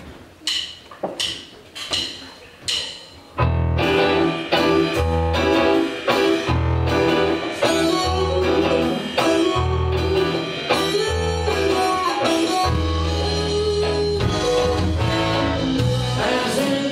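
Live band starting a song: four short count-in clicks, then about three and a half seconds in the full band comes in with bass guitar, drum kit, electric guitars and keyboards, heard from the back of a theatre.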